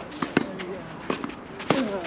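Tennis balls being hit with rackets and bouncing during a doubles rally: a handful of sharp pops at uneven spacing, the loudest near the end, with voices in the background.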